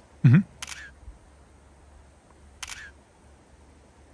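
Camera shutter clicks, twice, about two seconds apart.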